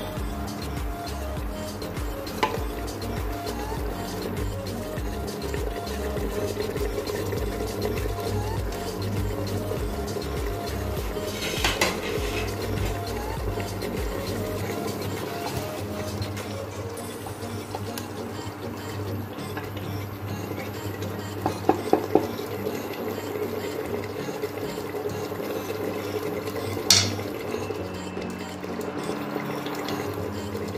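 Mutton korma gravy sizzling and bubbling in a pressure cooker as a spatula stirs it, with a few sharp clinks of the spatula against the pot.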